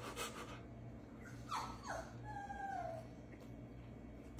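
A dog whimpering: two short falling whimpers about a second and a half in, then a longer thin whine that dips slightly in pitch.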